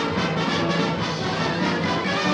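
Background music playing continuously, with no speech.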